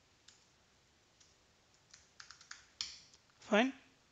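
Computer keyboard keystrokes: a few single clicks, then a quick run of several taps about two seconds in, as a class name is typed and entered in the code editor.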